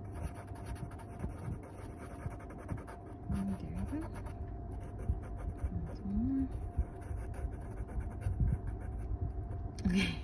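Graphite pencil shading on sketchbook paper: a run of short scratchy strokes as the dark spots are filled in.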